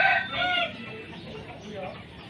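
Rooster crowing, the last part of a loud crow that ends a little under a second in, followed by fainter background sounds.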